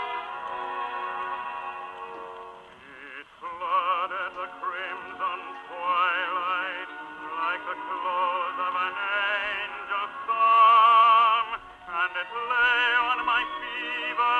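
Shellac 78 rpm record playing on an acoustic cabinet phonograph: about three seconds of sustained organ chords, then singing with a wide vibrato over organ and orchestra, loudest on a long held note near the end.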